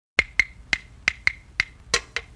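Solo percussion opening a song: a sharp, dry click struck seven times in a repeating short-long-long syncopated pattern, each strike ringing briefly.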